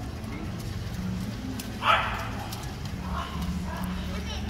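A small dog barks once, sharply, about two seconds in, over distant chatter.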